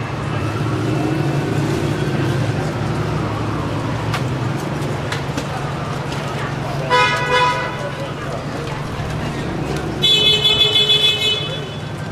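City street traffic with a steady low engine rumble; a car horn toots briefly about seven seconds in, then a run of several quick honks near the end, the loudest sound here.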